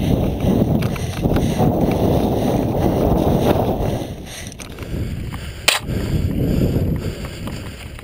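Wind buffeting the microphone of a camera riding a mountain bike, mixed with tyres rolling and bumping over dirt and slickrock: a loud, low rumble that eases after about four seconds. A single sharp knock comes a little before six seconds in.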